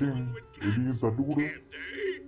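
A cartoon character's voice in short vocal bursts, with background music underneath.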